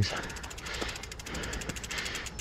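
Mountain bike's rear freehub ratcheting in rapid, even clicks as the wheel rolls without pedalling, with a few faint knocks.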